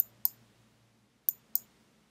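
Computer mouse button clicks, two pairs of short sharp clicks about a second apart, each pair a press and release a quarter second apart, as filter checkboxes are ticked.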